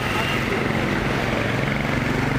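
An engine running steadily at idle, a low, even hum with a fine fast pulse.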